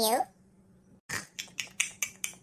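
Cartoon eating sound effect: a quick run of short crisp crunches, about five a second, starting about a second in.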